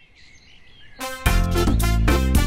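Faint birdsong ambience, then a children's song's instrumental intro starts about a second in and carries on loud with a steady beat.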